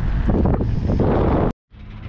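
Wind buffeting the camera microphone of a bicycle being ridden along a street, which cuts off suddenly about a second and a half in. After the cut, a much quieter stretch with a low hum.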